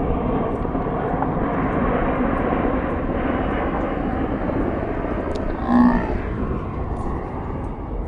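Boeing 737 airliner flying low, a steady jet engine rush. A brief pitched sound rises over it about six seconds in.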